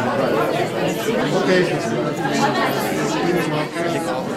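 Crowd chatter: several people talking at once in a room.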